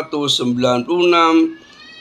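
Only speech: a man narrating in Indonesian, with a short pause near the end.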